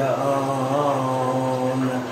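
A man's unaccompanied singing voice holding one long, drawn-out note, wavering slightly in pitch partway through.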